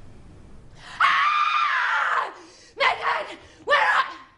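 A woman screaming as acted fright: one long high scream about a second in, then two short screams.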